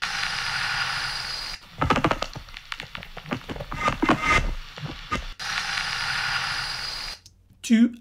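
Playback of an electroacoustic music recording: a steady hissing noise texture, then a few seconds of crackling clicks and knocks, then the hissing texture again, which cuts off shortly before the end.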